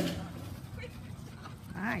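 A sharp bang right at the start, fitting the agility teeter's plank slapping down onto the ground under the dog. Near the end, the handler calls out to the dog.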